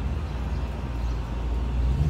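City road traffic heard from high above the street: a steady low rumble.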